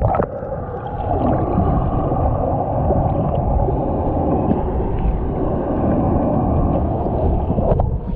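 Hot tub jets and bubbles churning, heard underwater: a loud, steady, muffled rush. There is a brief sharp sound just after the start and another near the end.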